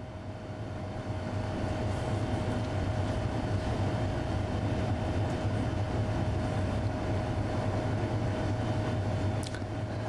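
A steady low mechanical rumble with one constant mid-pitched hum over it. It builds up over the first second or two, holds steady, and eases slightly near the end.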